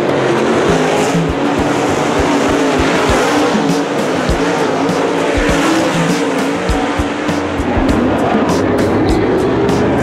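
Dirt super late model race cars' engines running hard as a pack of cars races past, with background music laid over it.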